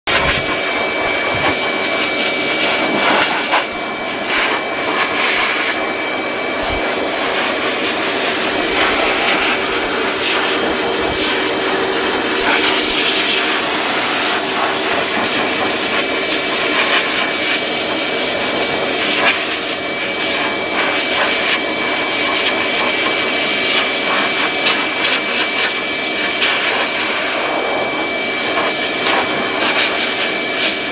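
Dog-grooming power dryer blowing air through its hose: a loud, steady rushing with a constant high whine.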